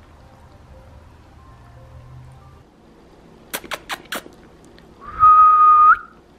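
A loud, high whistle held on one note for about a second near the end, sliding up as it stops, after a few sharp clicks.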